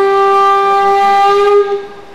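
One long, steady note from a wind instrument, its pitch rising slightly just before it stops near the end.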